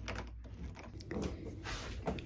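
Hand screwdriver driving a screw into a white flat-pack furniture panel: a run of small, irregular clicks.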